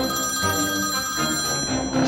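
Mobile phone ringing with a melodic electronic ringtone: an incoming call. It starts suddenly and plays a run of notes without a break.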